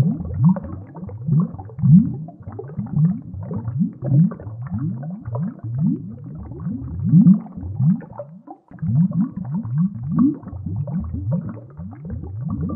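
Scuba diver's exhaled bubbles from the regulator, heard underwater: a run of low bubbling bursts, each rising in pitch, about one or two a second, with a short break about eight and a half seconds in.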